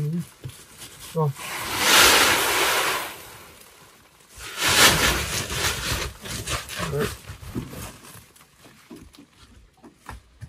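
Unhusked rice grain pouring out of one woven plastic sack into another, in two rushes of about two seconds each, with the plastic sacks rustling.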